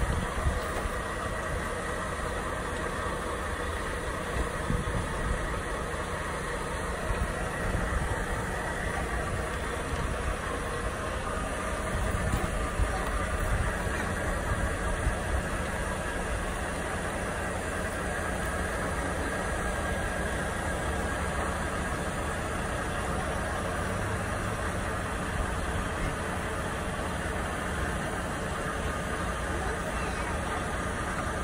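Semi-truck diesel engine idling steadily, with a trailer's landing-gear crank being wound by hand.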